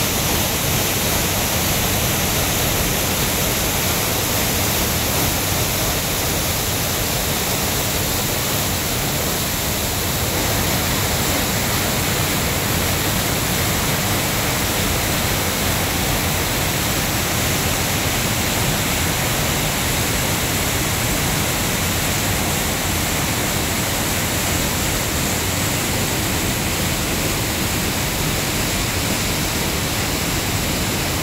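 Steady rush of white water cascading over boulders in a rocky mountain stream.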